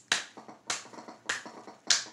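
Four sharp taps of feet on a floor, evenly spaced about 0.6 s apart.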